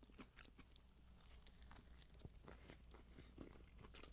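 Faint close-up chewing of a serrano pepper, with small irregular crunches and mouth clicks.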